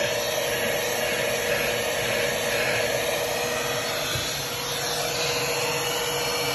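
Handheld vacuum cleaner running steadily with its dusting-brush attachment, a constant motor whine over the rush of suction air.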